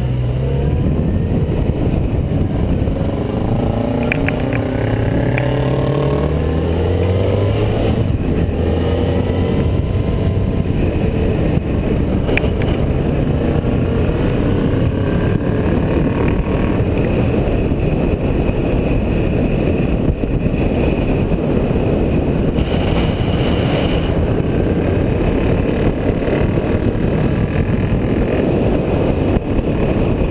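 Motorcycle engine accelerating, rising in pitch and dropping back at gear changes during the first several seconds. It then settles into steady cruising, where a loud, even rush of wind and road noise covers the engine.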